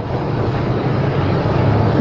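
Steady low rumbling noise: a hum under an even hiss, slowly growing a little louder.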